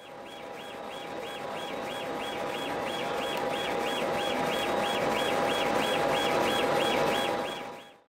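A machine running with a steady hum and one constant tone, with a high chirp repeating about two to three times a second. It fades in at the start and fades out near the end.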